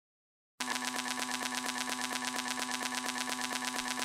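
Quiet opening of an electro house track: after a moment of silence, a buzzing synth loop of rapid, even pulses over a steady low drone.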